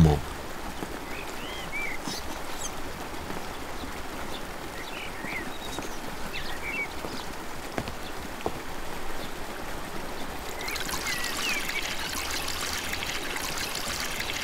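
Water poured from a wooden bucket into a wooden tub, the splashing pour building from about ten seconds in. Before it there is a steady outdoor background with a few faint chirps.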